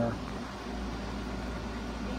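Steady low background hum of a small room, with no distinct event, after a last word of speech trails off at the very start.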